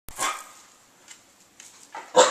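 A dog barks once at the very start, followed by a few faint clicks.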